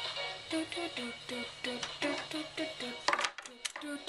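Pop music playing quietly from a radio in the room, a quick run of short pitched notes, about four or five a second. A few sharp clicks come a little after three seconds in.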